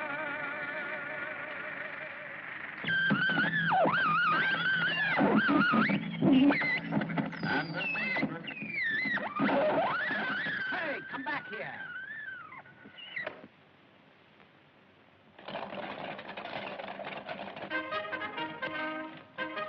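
A film soundtrack. A wavering, warbling musical chord gives way to several seconds of loud, shrill squeals that slide rapidly up and down in pitch. These stop suddenly, and after a short silence music comes back in.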